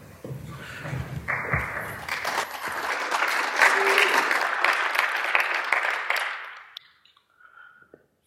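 Audience applause that starts about a second in, swells, and dies away near the end.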